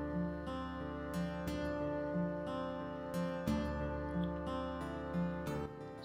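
Background music: a gentle acoustic guitar track with notes plucked at a steady pace over a sustained low tone.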